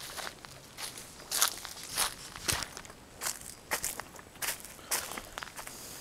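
Footsteps of a person walking along a road at roughly two steps a second.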